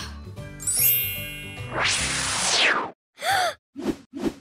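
Cartoon magic-wand sound effect over background music: a bright twinkling chime, then a loud swelling whoosh that cuts off sharply, as a character is magicked away. Two short separate sounds follow near the end.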